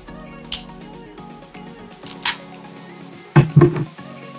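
Boiled blue crab shell cracking apart in the hands: a sharp snap about half a second in and a brittle crackle around two seconds, over background music with steady held notes. Near the end come a few loud, dull thumps, the loudest sounds here.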